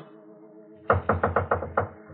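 A quick run of about seven knocks, a radio-drama knocking sound effect, starting about a second in over a faint held music chord.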